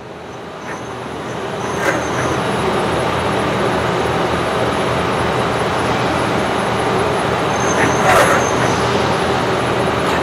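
XR6 CNC rotary tube cutter running its automatic tube-squaring routine: a steady mechanical whir that builds up over the first couple of seconds and then holds even. Short, sharper sounds come about two seconds in and again near the end.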